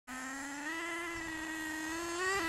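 Radio-controlled car's motor running with a steady high-pitched whine, stepping up a little in pitch and loudness less than a second in as the car speeds up.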